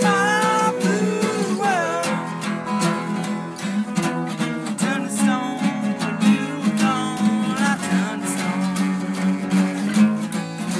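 Two acoustic guitars strummed together in a steady rhythm, playing a rock song's chord accompaniment.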